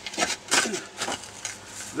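Shovel blade scraping and crunching into rocky soil in three short strokes, about half a second apart.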